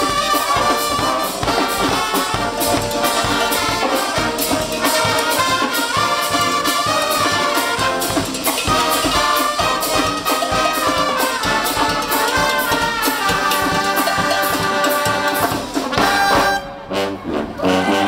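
Live brass street band (dweilorkest) of trumpets and trombones over a bass drum beat, playing a loud, upbeat tune. The music breaks off briefly near the end.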